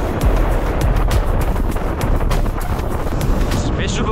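Loud, steady wind rush buffeting an action-camera microphone on a road bike moving at speed, with music playing under it.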